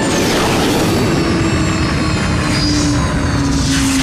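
Cartoon flying-craft engine sound effect as the red ship flies in and comes down to land: a loud, steady rushing whoosh with a high sweep falling at the start and a low whine that slowly drops in pitch.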